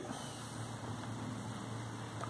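Steady low background hiss with a faint hum: room tone, with no distinct event.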